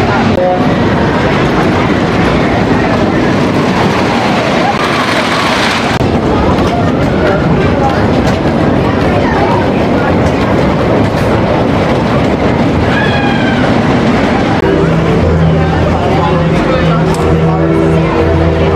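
Wooden roller coaster train running loudly along its wooden track, with riders yelling and screaming. A steady low hum of several tones comes in near the end.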